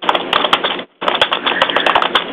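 Rapid, irregular clatter of computer keyboard typing heard over a telephone line, with a brief drop-out just under a second in.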